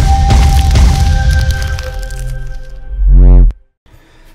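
Intro music sting made of sound effects. It opens with a sharp hit, and held ringing tones fade away over about three seconds. Near the end comes a loud low boom that cuts off suddenly.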